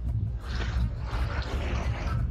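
Wind buffeting a handheld camera's microphone outdoors: an uneven low rumble, with a faint hiss of open-air background above it.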